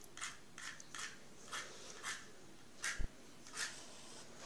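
A wooden match struck again and again against the side of a matchbox: about eight short scrapes, the last one near the end catching light with a brief hiss. A soft knock sounds about three seconds in.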